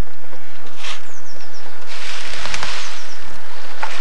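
Water sloshing and splashing as people wade in a shallow brook and drag debris out of it, with a louder stretch of splashing about two seconds in.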